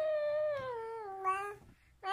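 A baby's drawn-out, high-pitched vocal sound, sliding slowly down in pitch with a brief louder lift near the end, then stopping.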